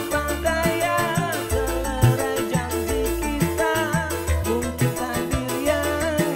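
A live dangdut band plays a keyboard-led tune over a steady drum and bass beat, with a man singing into a microphone.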